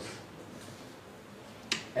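A pause in speech: faint room tone, then a single short, sharp click near the end, just before the man speaks again.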